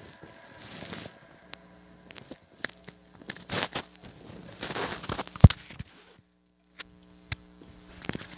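Handling noise from a phone held against its microphone: scattered clicks and rustles, one louder knock about five and a half seconds in, under a faint steady hum.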